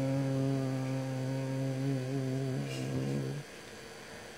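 A man's voice chanting one long, steady low note, like a held mantra drone, that breaks off about three and a half seconds in, leaving only a faint background.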